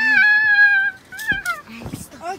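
A young child's voice holding one long high-pitched sung note for about a second, followed by a shorter falling note.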